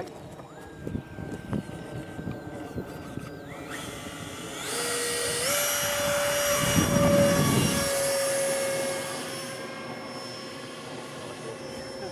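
Electric ducted-fan motor of a model jet whining, stepped up to a higher pitch twice as the throttle is opened. It reaches full power as the jet is hand-launched about six seconds in, with a brief rush of noise at the throw, then the whine slowly fades as the jet climbs away.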